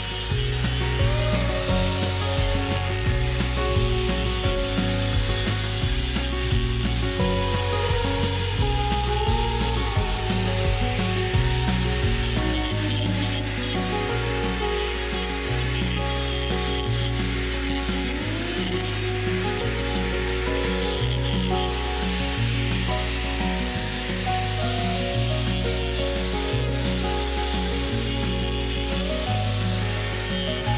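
Handheld electric angle grinder with a hoof-trimming disc grinding away claw horn around a cow's sole ulcer: a steady grinding. Background music with a stepping bass line plays under it.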